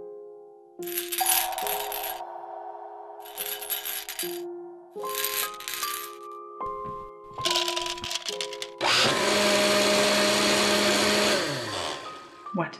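Soft piano music over kitchen noises: several short bursts of rattling and clatter, then a kitchen appliance runs steadily for about three seconds near the end and winds down as it stops.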